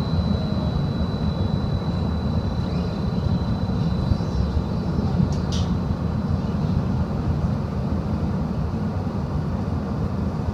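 Streetcar running along its rails, heard from inside the car: a steady low rumble. A thin high tone fades away over the first few seconds, and a short high sound comes about five and a half seconds in.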